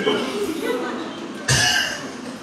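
A man laughing briefly into a handheld microphone, then a sudden loud cough into the mic about one and a half seconds in.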